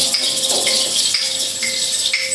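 Live jazz band playing: cymbals and jingling shaker-like percussion in an open rhythm, strokes about twice a second, over a steady held note.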